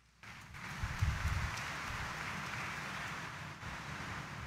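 Steady hiss-like room ambience with a low rumble, fading in just after a moment of complete silence, with a few low thumps about a second in.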